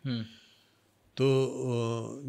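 A man's speech only: a word ends, there is a short pause, and about a second in he draws out the Hindi word "to" as one long, steady-pitched vowel.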